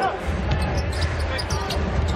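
A basketball being dribbled on a hardwood court during live play, with scattered sharp ticks over steady arena background noise.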